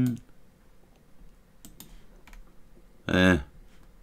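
A few faint clicks from computer controls as the on-screen document is scrolled down. A short spoken syllable comes about three seconds in.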